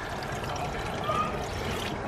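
Water pouring steadily from a bucket into a plastic tub already holding water, splashing into the surface.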